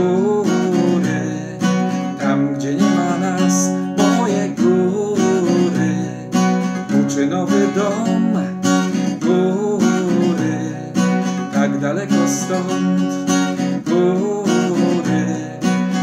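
Steel-string acoustic guitar strummed in a steady rhythm through a simple chord progression in D major, with a man's voice singing along over it.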